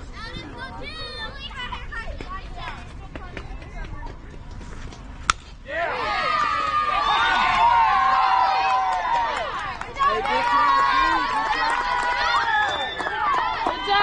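A single sharp crack of a bat hitting the softball about five seconds in. Right after it, many spectators yell and cheer in a loud mass of overlapping voices, which dips briefly and then rises again.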